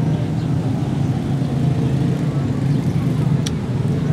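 A steady low engine rumble, like nearby road traffic, running unbroken, with one short click about three and a half seconds in.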